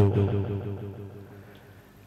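A man's voice through a microphone holding the last vowel of a phrase and fading out over about a second and a half, followed by a short pause with only faint room sound.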